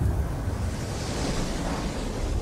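Aftermath of a film explosion: a heavy low rumble with a rushing, wind-like hiss of the blast's dust cloud that swells about halfway through.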